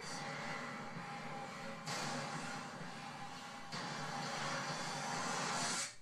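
Horror film trailer soundtrack: a dense, rumbling score swell that grows louder in sudden steps about two and four seconds in, then cuts off abruptly near the end.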